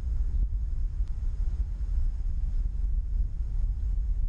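Low, unsteady rumble of wind buffeting an outdoor microphone, with no clear machine tone.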